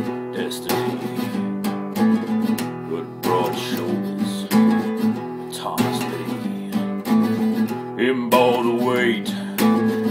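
Instrumental passage of a country/Americana song, led by a strummed acoustic guitar keeping a steady rhythm.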